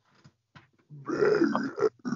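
A man's voice making a drawn-out, strained grunting noise, starting about a second in. It is a mock vocal sound effect put in the place of a word mid-sentence.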